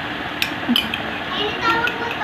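A baby's short vocal sounds near the end, after two sharp clicks in the first second.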